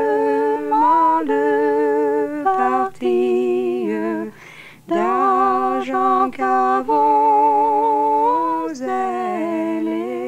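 Two women's voices singing an old French folk song without accompaniment, the same melody held a fifth apart in the manner of medieval organum, with a short pause for breath about halfway through.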